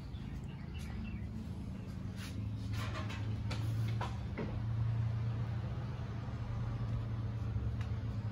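A steady low engine drone, an engine running at an even low speed, growing slightly louder a couple of seconds in, with a few faint clicks and a brief rising squeak about four seconds in.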